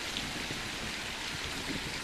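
Steady splashing of water in an outdoor fountain pool.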